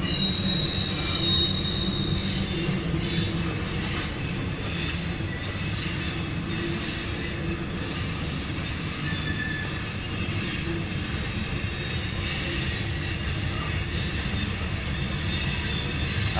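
Covered hopper cars of a CSX mixed freight train rolling past, a steady low rumble of wheels on rail with thin, high-pitched wheel squeals coming and going over it.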